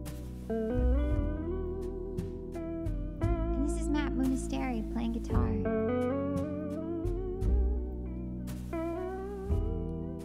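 Archtop guitar playing a slow instrumental of sustained chords and single-note melody over a held bass, with wavering notes about four to five seconds in.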